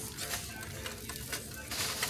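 Faint background music playing over the store's sound system, with a short hiss near the end.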